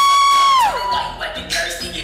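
A loud, high whoop that rises, holds for about half a second and falls away, over hip-hop dance music with a steady beat.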